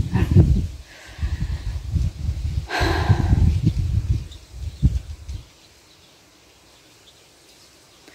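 Wind buffeting the phone's microphone in uneven gusts, dying away about five and a half seconds in. A brief rough noise cuts through about three seconds in.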